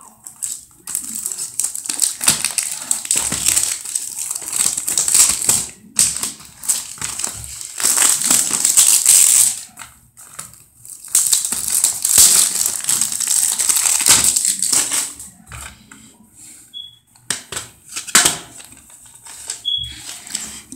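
Plastic shrink-wrap being torn and crinkled off a CD jewel case, in long stretches of loud crackling with a brief pause about halfway. Near the end, lighter clicks of the plastic case being handled and opened.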